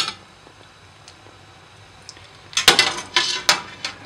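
A metal slotted skimmer clinking: one sharp click at the start, then after a quiet stretch a quick run of five or six knocks and scrapes against a stainless-steel pot as boiled meat and bones are fished out of the broth.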